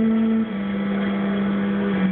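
Early-music wind ensemble playing a medieval song: a low wind holds a long steady note, stepping down to a lower note about half a second in, with softer higher parts held above it.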